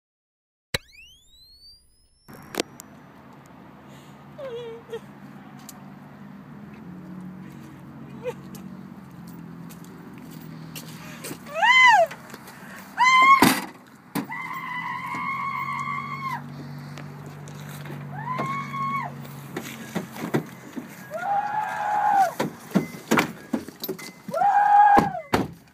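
Inside a car: a low steady hum with scattered clicks and knocks, broken by loud, long wordless voice cries that rise and fall, two about twelve and thirteen seconds in, one held for about two seconds just after, and more near the end.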